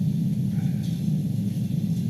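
Steady low hum of a meeting room's background in a pause between spoken sentences, with nothing else standing out.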